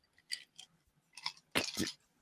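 Faint swallowing and mouth sounds of a man drinking from a glass, with a few soft clicks, then two short breathy sounds near the end.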